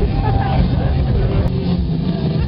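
Open-air festival ambience: a steady low rumble of amplified stage music's bass carrying across the field, with crowd voices in the background and a sharp click about one and a half seconds in.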